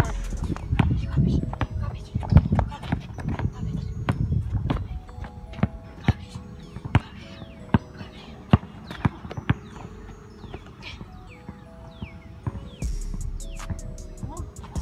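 Basketball being dribbled on an outdoor court: sharp, single bounces at uneven spacing, clearest in the second half, over background music.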